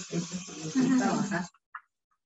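A woman's voice, indistinct, for about a second and a half, then cutting off, with a hiss behind it.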